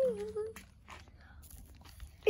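A child's drawn-out vocal sound for about half a second, then quiet with a few faint clicks and knocks.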